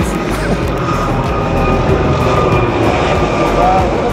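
A helicopter flying overhead: steady rotor and engine noise.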